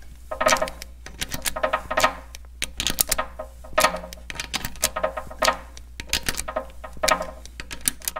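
Socket ratchet clicking in repeated short strokes, about one a second, with a metallic ring, as long bolts in the end of a Caterpillar D2 transmission countershaft are turned to draw the ball bearing onto the shaft.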